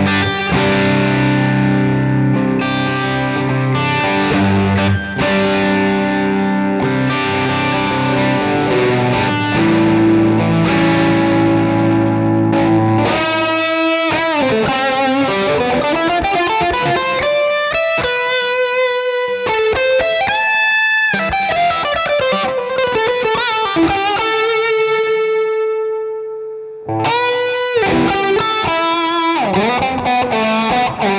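Distorted electric guitar played through a driven amp and a Boss EQ-200 graphic EQ pedal. It opens with strummed open chords for about the first half, moves to single-note lead lines with slides and a long held note that fades away, and returns to strummed chords near the end.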